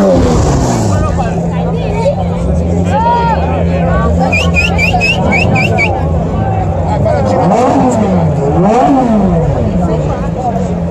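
Sports car engines idling over crowd chatter, with a rev falling away at the start; near the end a Ferrari V8 is blipped twice, each rev rising sharply and dropping back.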